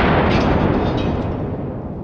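The booming report of a .50 BMG rifle shot, echoing and rolling as it slowly dies away.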